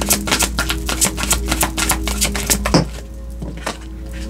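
A deck of oracle cards being shuffled by hand: a fast run of crisp card clicks for about the first two and a half seconds, then a few single snaps as the shuffling slows.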